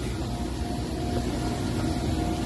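Steady low rumble of outdoor background noise with a faint, constant hum above it; no distinct event stands out.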